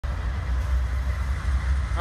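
Kansas City Southern diesel locomotive running as it rolls slowly past, a steady low rumble.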